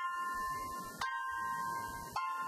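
Grand piano playing slow high notes. Each note is struck and left ringing, with a fresh strike about a second in.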